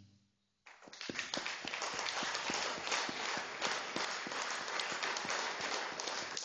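Audience applauding, the clapping starting abruptly about half a second in after a brief silence.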